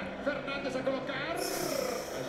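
Quieter speech from the football match broadcast playing under the stream, most likely the TV commentary, with a hiss coming in near the end.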